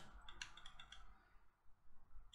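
Faint, quick clicks of a vape box mod's buttons, a short run about half a second in, then near silence.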